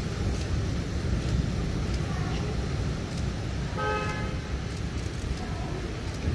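A vehicle horn toots once, briefly, about four seconds in, over a steady low rumble of street traffic.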